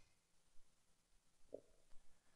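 Near silence: room tone during a pause in the narration, with one faint, brief sound about one and a half seconds in.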